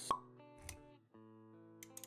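Intro-animation sound effects over music: a sharp pop right at the start, a soft low thud about half a second later, then sustained synth-like music notes that break off briefly and come back about a second in.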